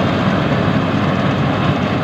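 Yanmar YH850 rice combine harvester running steadily while cutting and threshing rice, a continuous dense engine and machinery noise.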